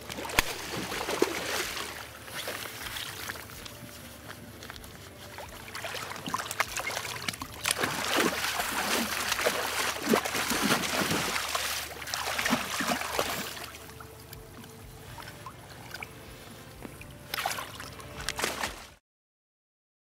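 King salmon thrashing and splashing at the surface beside the boat's hull as it is brought in, in loud surges over a steady low hum. The sound cuts off abruptly about a second before the end.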